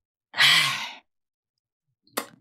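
One breathy sigh with some voice in it, starting about a third of a second in and fading out by about a second: an overwhelmed reaction of relief and joy at hearing good news.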